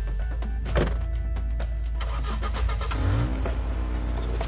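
A car door shuts with a thud about a second in, followed by a few smaller knocks. Near the end the SUV's engine cranks and starts, rising in pitch and settling into a steady idle. A low musical drone runs underneath.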